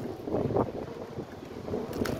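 Wind blowing across the microphone, an uneven low rush of noise.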